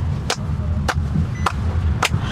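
Hands clapping in a steady beat: three evenly spaced claps, a little under two a second, over the low steady rumble of a car cabin.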